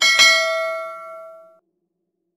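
Notification-bell ding sound effect: a click, then a bright chime of several tones that rings and fades, cutting off about one and a half seconds in.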